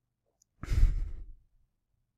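A man's sigh: a single breath out close to the microphone, lasting about a second.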